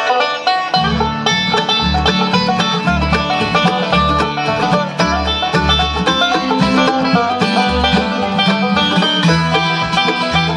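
Live bluegrass band playing an instrumental intro, with five-string banjo rolls out front over acoustic guitar, mandolin and fiddle. The music starts at once, and upright bass notes come in about a second later at roughly two a second.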